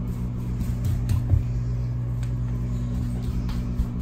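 A steady low electrical hum with unchanging pitch, such as a bathroom exhaust fan makes, with a few faint clicks.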